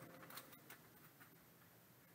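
Near silence, with a few faint ticks in the first half second as a stack of trading cards is handled and set down on a table.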